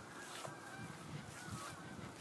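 Faint bird calls, short wavering calls like distant geese honking, over quiet outdoor background.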